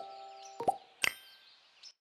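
Short pop and click sound effects of an animated subscribe end screen: a double pop a little over half a second in, another about a second in, and a faint one near the end, each with a brief ringing tone.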